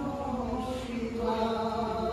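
A single voice chanting Hindu puja mantras in long held notes that shift slowly in pitch.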